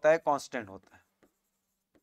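A man's voice speaking for under a second, then near silence.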